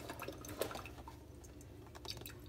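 Faint scattered clicks and rustles of a small cardboard product box being handled and picked up, over a steady low hum.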